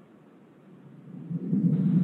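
Low, muffled rumbling noise on an open call microphone, rising out of near quiet about a second in and going on unevenly.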